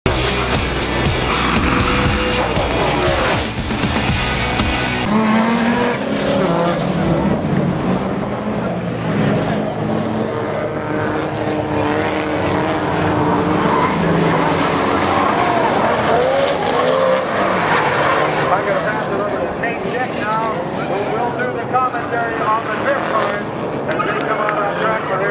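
Drift cars on a track, engines revving up and down and tires squealing as they slide.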